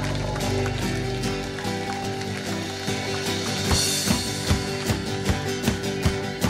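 Live country-rock band with electric guitars and drums playing. A chord is held for the first second or so, then steady drum beats come in from about three and a half seconds in.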